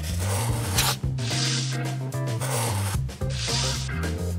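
Pencil scratching on paper in two strokes, each under a second long, over background music with a steady bass line.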